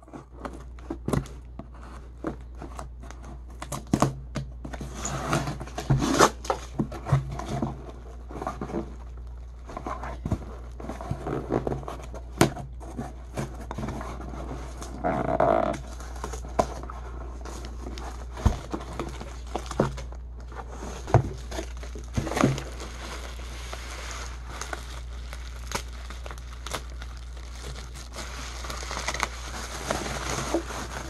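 A cardboard parcel being unpacked by hand: box flaps pulled open, kraft packing paper and bubble wrap crinkled and torn, with many sharp clicks and scrapes scattered throughout.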